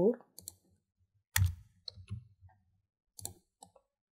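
A few short computer mouse clicks. The strongest comes about a second and a half in, with a dull thud under it.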